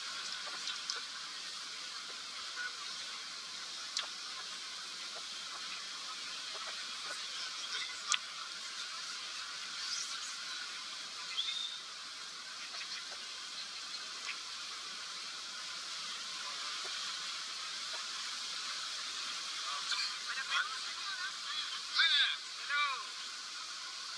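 Steady rushing noise of river water and wind on a moving open tour boat, with a few sharp clicks. Faint voices and shouts come in near the end.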